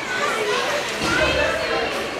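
Several indistinct voices calling out at once in an ice arena, children's voices among them.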